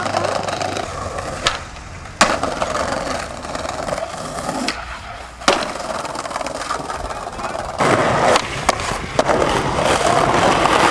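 Skateboard wheels rolling over brick paving, with sharp wooden clacks as the board is popped and landed, about seven times. The rolling grows louder near the end.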